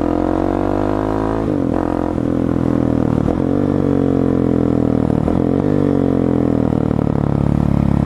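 Husqvarna 701 Supermoto's single-cylinder engine running while ridden, its revs sliding down and back up, with an abrupt gear change about a second and a half in. This is break-in riding under load, building pressure on the new piston rings while staying well short of the rev limiter.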